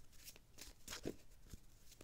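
Faint rustling and a few light clicks of a deck of cards being handled and shuffled as a card is drawn.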